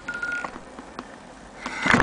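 A thin steady high tone for about half a second, a few light clicks, then near the end a loud burst of knocking and rubbing from a hand handling the camera right against the lens.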